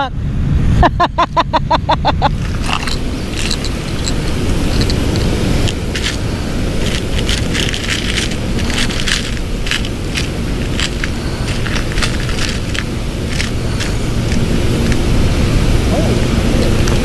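A person laughs for a couple of seconds, then steel fishing hooks and lures click and rattle against the compartments of a plastic tackle box as a hand picks through them, over a steady low rumble.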